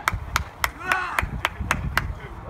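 Rhythmic hand clapping of encouragement, sharp evenly spaced claps at about four a second.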